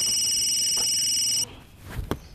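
Phone ringing with a high, trilling electronic ring that stops about one and a half seconds in.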